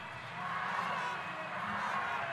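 Steady background noise of an indoor swimming pool venue: an even wash of sound with no distinct events.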